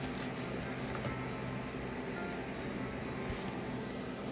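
Steady hum and hiss of a forced-air gas garage heater running, with a few light taps and clicks from small items being handled.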